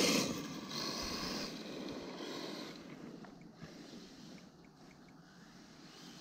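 Arrma Typhon 6S RC buggy with a Hobbywing Max 8 speed controller and 2250kv brushless motor driving off over a gravel road. It is loudest at the start and fades steadily as the buggy pulls away.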